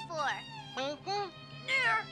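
High-pitched cartoon character voices: about four short calls with sliding, arching pitch, the loudest near the end, over soft background music.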